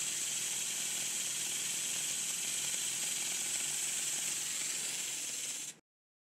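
Small Weir-type shuttle-valve steam feed pump test-running on compressed air, giving a steady hiss of exhausting air as it runs smoothly. The sound cuts off suddenly near the end.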